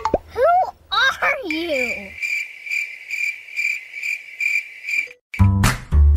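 Cricket chirping: a steady high-pitched chirp pulsing about three times a second, entering after a brief voice and stopping shortly before a beat-driven music track begins near the end.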